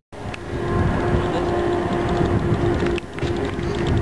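Boat engine running with a steady hum, under a low rushing of wind buffeting the microphone.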